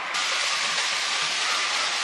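Steady hiss of arena background noise from a televised table tennis match, even and unchanging.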